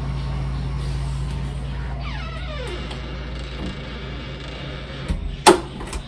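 A bedroom door being eased shut: a falling creak a couple of seconds in, then a sharp click of the latch catching, the loudest sound, about five and a half seconds in, over a steady low hum.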